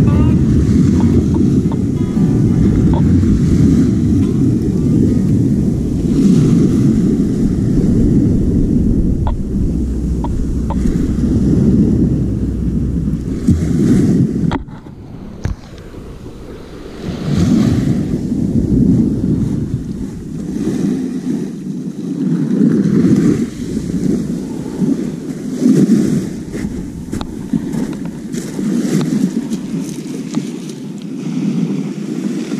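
Wind buffeting the microphone over waves washing onto a beach, loud and gusty, with a sudden quieter stretch about halfway through before the surges return.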